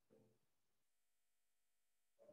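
Near silence: faint room tone, with one brief faint murmur in the first half-second.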